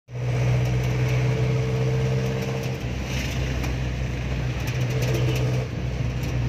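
A jeepney's diesel engine running steadily under way, with a strong low hum and scattered rattling clicks. The engine note breaks briefly about three seconds in and again near the end.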